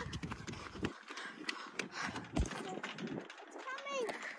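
Footsteps crunching on wood-chip mulch and on a perforated plastic playground platform, an irregular run of light crunches and knocks.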